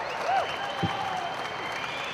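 Audience applauding as the live electric guitar music ends, with a steady high tone held over the clapping.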